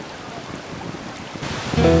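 Water running over stones in a shallow stream, a steady rushing hiss. Near the end it grows louder and music with sustained low notes comes in over it.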